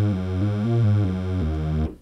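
Yamaha TG77 FM tone generator playing a line of low notes on a buzzy, supersaw-like patch: three sawtooth operators detuned against each other with phase sync off. The pitch steps to a new note every half second or so, and the sound cuts off sharply just before the end.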